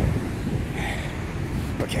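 Wind buffeting the microphone over the steady rush of heavy ocean surf breaking against a rocky cliff.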